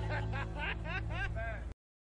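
A man laughing, a rapid run of short laughs over background music; it all cuts off suddenly near the end.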